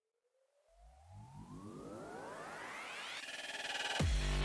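A rising synthesizer sweep: several tones glide upward together and get louder over about three seconds, building into electronic background music.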